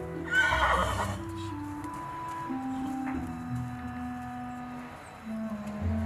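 Background music of held, steady tones, with a short horse whinny, a brief wavering call, about half a second in.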